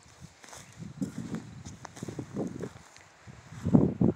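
Footsteps of a person walking on dry dirt and scrub: a handful of uneven steps, the loudest just before the end.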